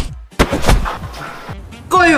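An edited-in impact sound effect: a sudden loud boom about half a second in, with a second hit just after, decaying over background music.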